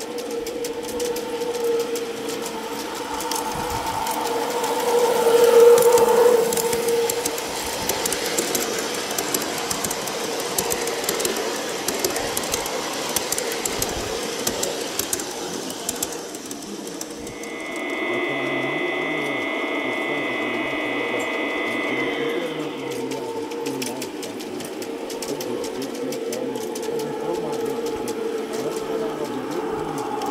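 G-scale model electric trains running on garden-railway track: a steady motor hum with light clicking of wheels over the rail joints, louder for a while about five seconds in. Past the middle a high steady tone sounds for about five seconds.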